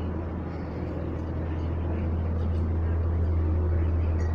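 Steady low machine hum, unchanging throughout, under a faint background of room noise.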